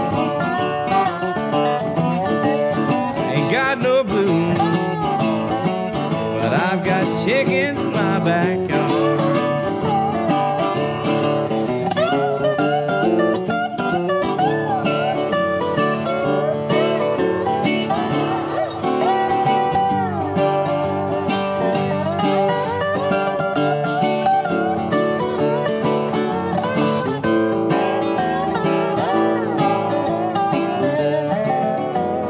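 Instrumental break on two resonator guitars. A Brazilian rosewood Scheerhorn is played lap-style with a steel bar, taking the lead with sliding notes, over a National Pioneer RP1 playing rhythm.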